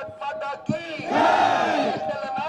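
Political slogan shouting: a man calls out long, drawn-out slogans into a microphone, and a crowd shouts along with him.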